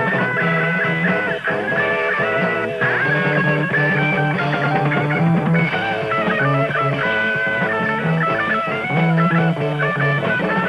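Guitar-led rock music with no singing: sustained guitar notes over a bass line that steps between notes.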